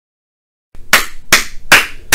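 A man clapping his hands in a steady beat: three sharp claps a little under half a second apart, starting after a short silence.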